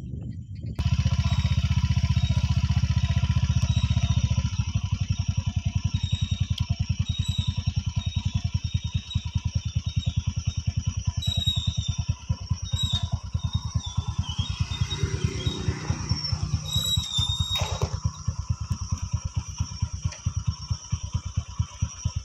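Motorcycle engine running at low revs, a steady, rapid, even pulsing beat.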